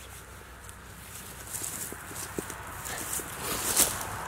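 Dry leaf litter rustling and crackling under a person's hands and boots while a steel trap is set on the ground, with scattered light clicks that grow busier and a sharper crackle near the end.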